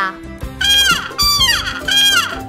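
A trumpet sounds three short notes, each falling in pitch, one for each syllable of the word caballo, over a steady background music bed.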